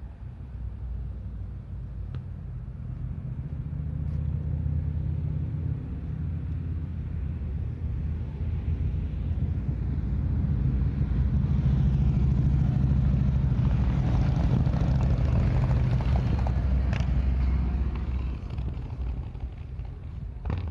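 Low engine rumble of road vehicles passing nearby, with tyre hiss. It swells through the middle and eases near the end.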